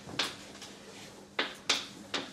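Three sharp taps or clicks: one just after the start, then two close together in the second half, over a faint steady hum.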